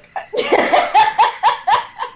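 A person laughing heartily: a quick run of about five high, rising 'ha' pulses.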